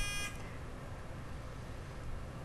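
Quiz-show buzz-in buzzer sounding a steady electronic tone that cuts off about a third of a second in, then quiet studio room tone.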